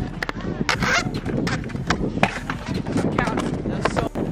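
Stunt scooter riding on a concrete skatepark: wheels rolling with clattering knocks and clicks, the sharpest about two seconds in, as the rider lands. Voices call out near the start.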